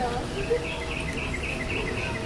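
A rapid run of short, high chirps, about five a second, starting about half a second in and going on steadily, from an insect or small bird. A brief knock comes just as the chirping starts.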